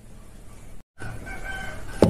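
A faint, drawn-out bird call in the background, heard in the second half after the sound drops out completely for a moment just before a second in.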